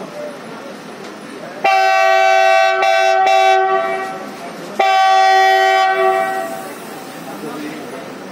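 Multi-tone air horn of an Indian Railways WDG6G diesel locomotive sounding two long blasts of about two seconds each, a chord of several tones. The first starts a second and a half in and the second about five seconds in.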